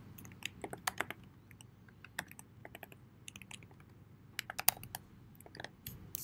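Computer keyboard typing: irregular short runs of light key clicks with brief pauses between them.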